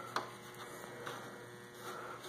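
Faint steady electrical hum, with one light click shortly after the start.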